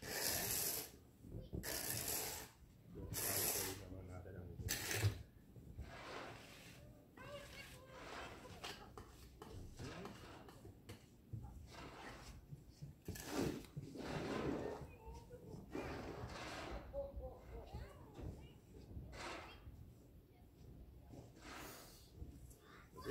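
Snow being swept and scraped off a car's windshield in a series of noisy strokes. There are several loud sweeps in the first five seconds and two more about halfway through, with quieter irregular scraping between.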